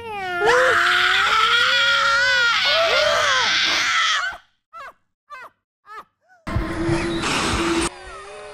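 Several voices wailing and howling together in drawn-out, wavering spooky cries for about four seconds. A few short squeaky cries follow, then near the end a burst of noise with a steady low tone.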